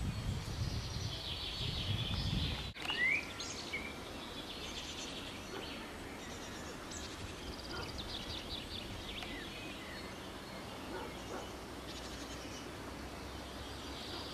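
Wild birds chirping and singing, many short calls and trills with a quick rising chirp about three seconds in. A low rumble underneath stops abruptly at a cut a little under three seconds in.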